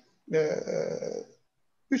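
A man's voice through a video call: one drawn-out hesitation sound of about a second, held without forming words, with the line dropping to dead silence before and after it.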